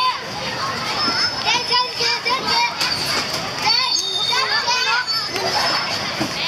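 Young children playing on a playground slide: repeated high-pitched squeals and excited chatter in short bursts.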